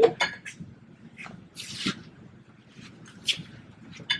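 A few light clicks and knocks and a short scraping rush from hands and tools working at a pickup truck's wheel during a tire change.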